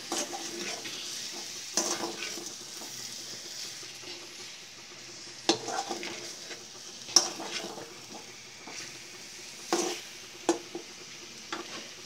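Small whole potatoes sizzling in oil and spice masala in an aluminium kadai while a spatula stirs them, scraping and knocking against the pan about six times over a steady frying hiss.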